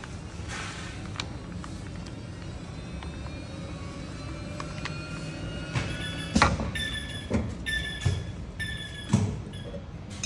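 YG(B)461G fabric air permeability tester running a calibration test, drawing air through a calibration board with a steady running noise and a faint tone that rises slowly. Over the last few seconds the machine gives about four short pitched tones, each about half a second long, with knocks between them, as the test finishes.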